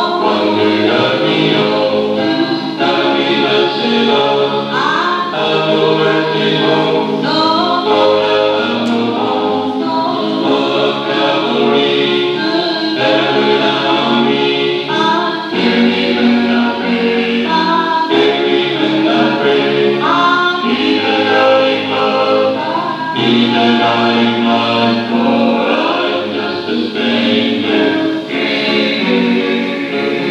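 Music: a choir singing a gospel song, continuously throughout.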